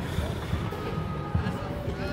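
Outdoor city ambience: indistinct voices in the distance over a steady low rumble of traffic.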